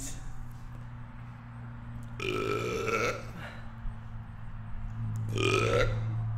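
Two short, breathy vocal sounds from a man, each about a second long, about two and five seconds in, over a low steady hum.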